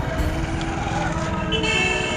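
Street traffic running past, with a vehicle horn sounding briefly near the end.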